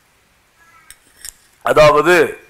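Two light metallic clinks from a small stainless steel drinking tumbler being handled after a sip. A man's voice starts speaking near the end.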